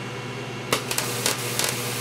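Solid-state Tesla coil with a low steady hum, then about two-thirds of a second in a sudden harsh hiss with sharp crackles as the discharge goes into full corona. In that mode the coil draws about seven amps at roughly 150 V, a full kilowatt.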